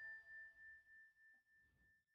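Faint fading tail of an outro logo jingle: one high ringing tone that dies away with a pulsing wobble, about three swells a second.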